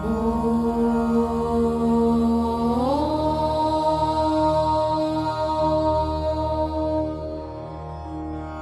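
Devotional music: one voice chanting a long held note over a steady drone, sliding up to a higher note about three seconds in and holding it until it fades near the end.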